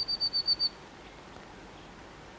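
A chickadee calling at the nest hole: a quick run of short, high, evenly spaced notes, about eight a second, ending less than a second in.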